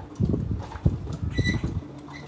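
A horse chewing a banana he has just taken from the hand, with irregular munching and crunching and a sharper click a little before the middle.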